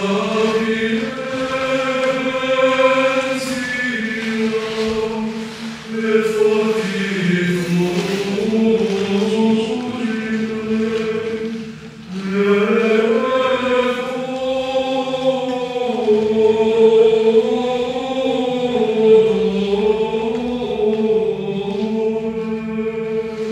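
Voices singing a slow liturgical chant in church: long held notes with gently moving pitch, in two long phrases with a short break about twelve seconds in. It is the singing at the entrance of the Mass, before the opening sign of the cross.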